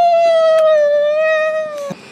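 A person's long, high-pitched scream, held at one pitch and cutting off abruptly near the end.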